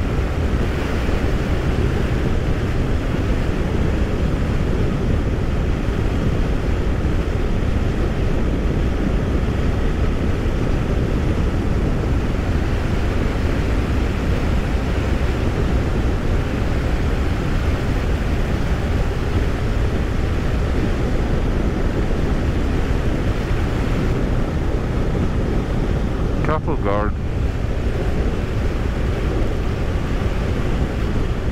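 Steady wind buffeting the microphone over the running engine and tyre noise of a BMW R1200RS boxer-twin motorcycle cruising at constant speed on a chip-seal road.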